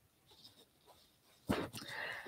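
Near silence, then about one and a half seconds in a short breathy vocal sound from the presenter, a breath or murmur just before she speaks.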